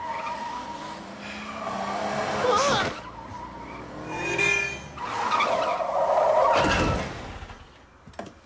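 Cartoon car sound effects: a car driving, with tyres screeching as it swerves and a loud, heavy burst of noise near the end.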